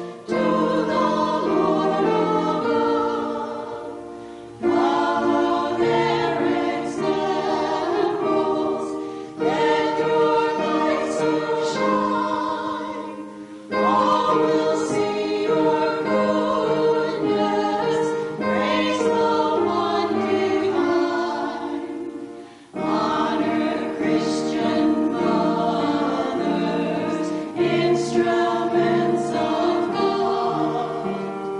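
A quartet of women's voices singing a sacred song together in harmony, in long phrases with short breaks between them.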